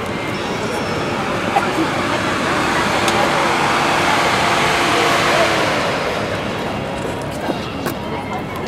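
A road vehicle passing in city traffic, its noise swelling to a peak about five seconds in and then fading, over the chatter of a crowd.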